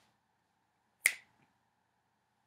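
A single sharp finger snap about a second in, over a faint steady hum of room tone.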